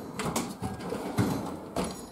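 Metal toolbox drawers sliding on their runners as one is shut and another pulled open, with a knock about two seconds in as a drawer reaches its stop.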